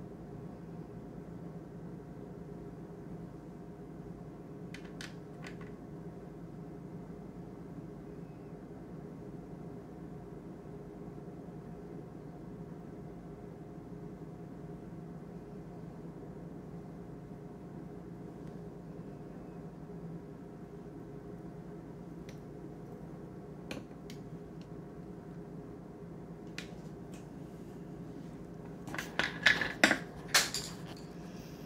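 Steady low hum of room tone with a few faint clicks, then a short cluster of louder knocks and clatter near the end as things are handled.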